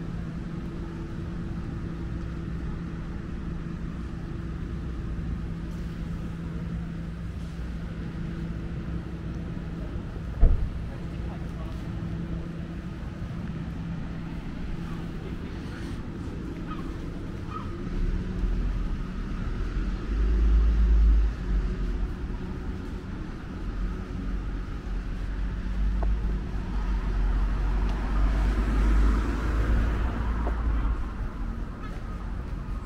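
Street ambience with road traffic: a steady low hum, a single sharp knock about ten seconds in, then a deeper uneven rumble of traffic building through the second half, with a vehicle approaching near the end.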